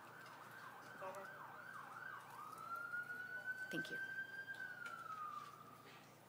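Faint emergency vehicle siren: a few quick up-and-down yelps in the first two seconds, then one slow wail that rises, holds and falls away.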